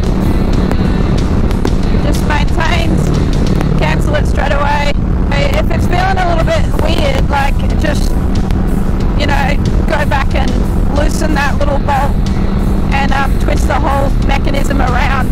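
Kawasaki Vulcan S 650 parallel-twin engine running at a steady highway cruise of about 100 km/h, a constant low tone under heavy wind and road noise.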